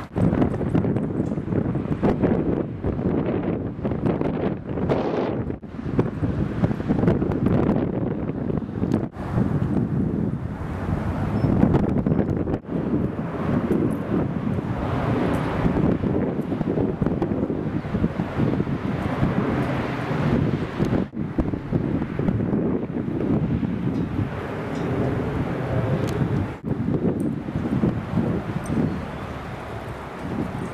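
Wind buffeting the camera's microphone: a loud, steady rumble with frequent brief dropouts.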